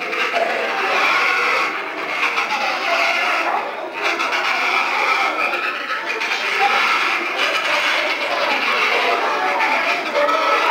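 A dense, continuous din of many penguins calling at once from an Adélie penguin colony, played over loudspeakers from a film soundtrack.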